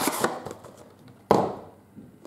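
Empty cardboard trading-card box being handled with a brief rustle, then set down on a table with a single sharp knock a little over a second in.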